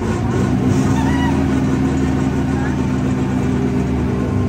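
Small amusement-park ride train running along its track: a loud, steady low drone with a rumbling texture, setting in suddenly just before and holding throughout.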